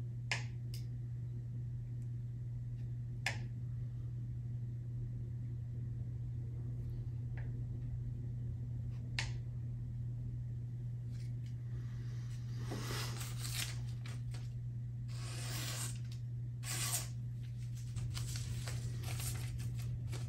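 Knife blade slicing through paper in a sharpness test: a few sharp clicks of handling at first, then from about halfway through several short swishing cuts with paper rustling. A steady low hum runs underneath.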